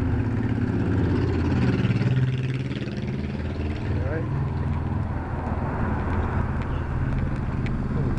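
Cruiser motorcycle's engine running as it rides past with car traffic; the low engine drone is strongest in the first two and a half seconds, then eases as a car passes.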